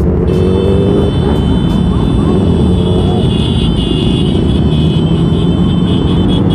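Motorcycle engines running in slow, crowded rally traffic, heard from the saddle of a single-cylinder Royal Enfield Classic 350 among many bikes, a steady loud rumble throughout. A steady high-pitched tone comes in about a third of a second in and holds over the engine noise.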